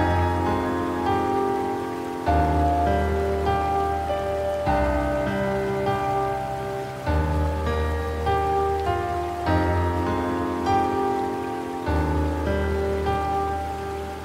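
Slow, relaxing piano music, its deep bass note changing about every two and a half seconds, over a steady rain hiss.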